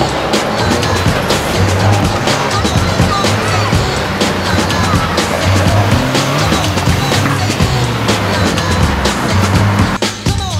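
Backing music with a steady beat over a Fiat 500 Abarth driving a cone course, its engine running and its tyres working on the asphalt with brief squeals.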